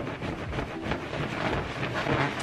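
Rustling and creaking of a round, padded saucer chair as someone wiggles and bounces in it, an irregular run of scuffs and shifting noises.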